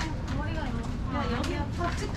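Passersby talking in an alley, their voices over a steady low rumble of street ambience, with a few light clicks.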